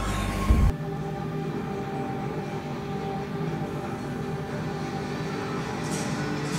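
TV episode soundtrack: a loud low rumble that peaks with a bang about half a second in and cuts off abruptly, followed by quieter sustained droning score tones.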